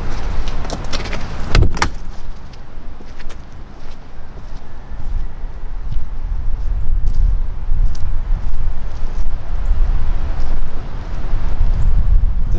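A metal compartment door banging shut about a second and a half in, followed by a low, uneven rumble of wind on the microphone.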